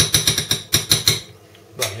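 Metal spoon clinking rapidly against a saucepan of warm coffee-milk mixture, about eight clinks a second, stopping a little past a second in.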